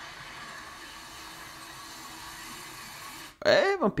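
A faint, quiet film-trailer soundtrack, then near the end a short loud voice cry whose pitch rises and then falls.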